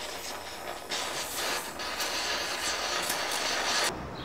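Steady hissing with short scratchy strokes from hand work at a workbench, cutting off abruptly near the end.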